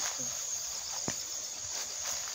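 Steady, high-pitched chorus of insects such as crickets or cicadas, with a single sharp click about halfway through.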